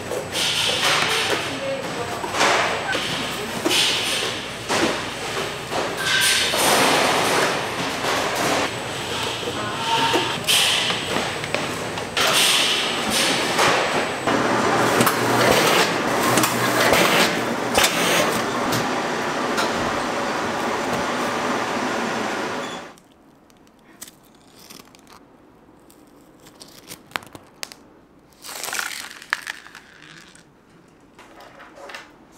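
Busy packing-room noise: cardboard cake boxes being handled and a shrink-wrapping machine running, with indistinct voices and a few short beeps. About 23 s in it drops abruptly to a much quieter stretch with only light taps.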